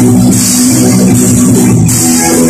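Live rock band playing loudly: electric guitars and bass guitar over a drum kit, with a continuous wash of cymbals on top.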